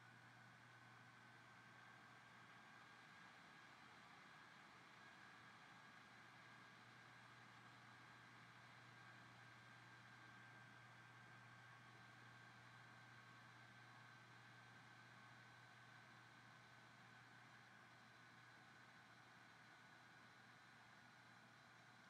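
Near silence: faint steady room tone and hiss, with a faint steady high whine.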